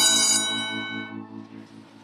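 Electric school bell ringing with a loud, steady metallic clang. It stops about half a second in, and the gong's tone dies away over the next second.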